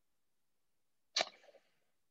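Near silence, then a little over a second in one short, sharp breath from a person about to speak, fading within about half a second.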